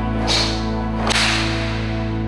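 Two sharp swishes of karate arm strikes, the first about a quarter second in and the second about a second later, over background music with long held tones.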